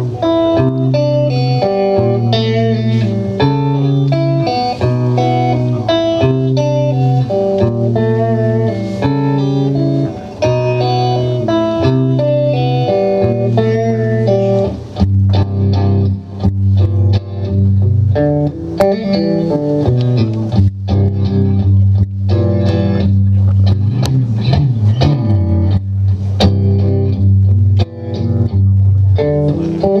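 Live guitar and drums playing an instrumental break: the guitar picks a repeating riff over low notes, and the drum hits grow busier about halfway through.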